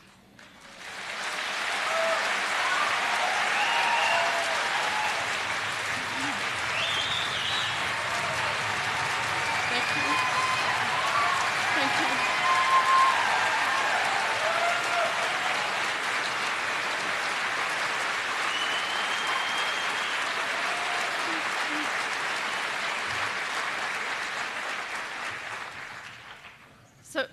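Large audience applauding with scattered cheers and whoops. The applause swells over the first couple of seconds, holds steady, and dies away near the end.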